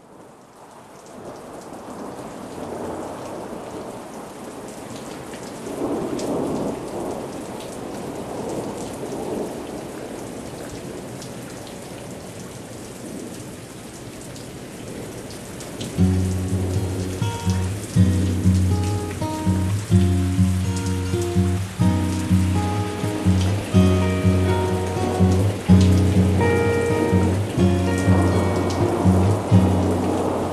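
Steady rain with swells of rolling thunder, then, about halfway through, acoustic music comes in over the rain with a steady pulse of low notes.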